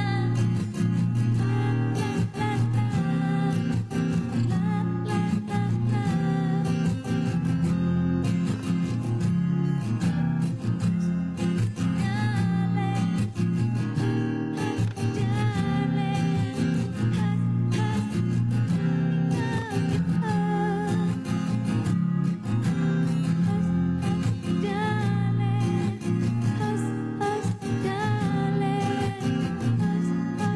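A woman singing a song into a microphone, with long held notes, over continuous instrumental accompaniment.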